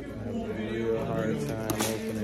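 Indistinct voices talking, with a brief crackle of plastic wrap near the end as the shrink-wrap on a tin is handled.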